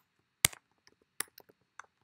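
Typing on a computer keyboard: a few separate, sharp keystroke clicks, the loudest about half a second in.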